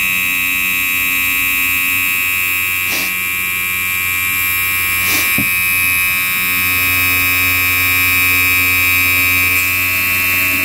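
Electric pump motor of an outboard's hydraulic power trim/tilt unit running steadily with a high whine as the ram strokes in. The unit is being cycled up and down after fluid was added, to work it through and check that it holds. A couple of faint ticks come about 3 and 5 seconds in.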